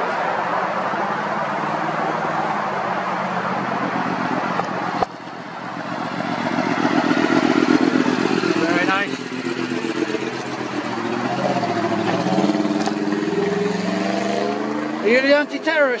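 An engine passing by, its pitch sliding down and then back up over several seconds, over steady outdoor background noise.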